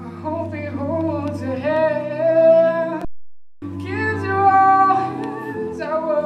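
Male a cappella group singing: a lead voice carrying the melody over held backing chords and a low sung bass line. All the voices stop together for about half a second midway, then come back in.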